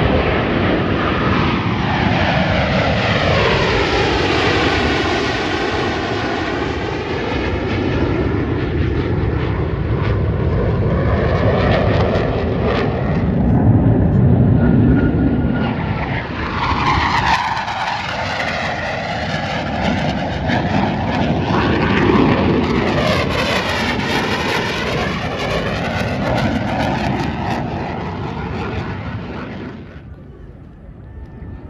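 Blue Angels F/A-18 fighter jets flying past overhead, their jet engines loud, with a sweeping rise and fall in tone as they go by. A second pass follows about halfway through, and the noise fades near the end.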